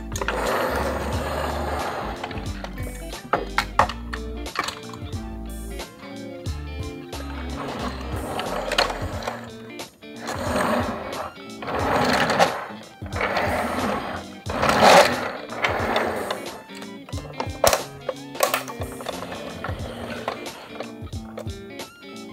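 Background music, over several bursts of scraping and rattling from a small die-cast toy car being slid and rolled into a plastic carrier-truck case, with a few sharp plastic clicks; the loudest scrape comes about two-thirds of the way in.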